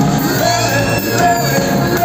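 A live pop-rock band playing through a PA, with electric guitar and keyboard, and voices singing over it, heard from the audience.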